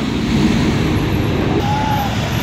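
Steady road traffic rumble from passing vehicles, with a short high tone near the end.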